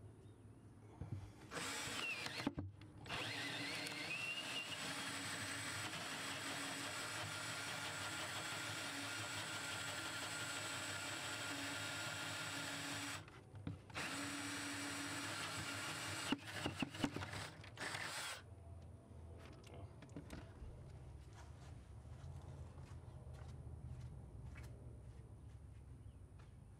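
Ryobi cordless drill boring through a wooden cabinet board with a spade bit: a short start, a steady run of about ten seconds, a brief stop, then about four seconds more before it stops, with a few clicks as it finishes.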